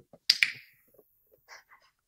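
A hand-held dog-training clicker pressed once, giving a sharp double click (press and release) about a third of a second in. The click marks the puppy for getting onto her dog bed on the cue "kennel".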